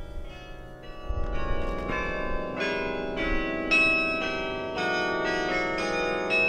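A 49-bell bronze carillon playing a slow melody: notes struck one after another, each ringing on and overlapping the next.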